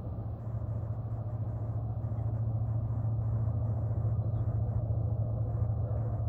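Steady low mechanical hum, like a running engine or motor, holding an even low drone without change.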